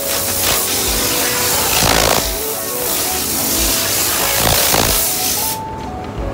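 Compressed-air spray gun hissing in a spray booth, with several brief stronger blasts, cutting off suddenly shortly before the end.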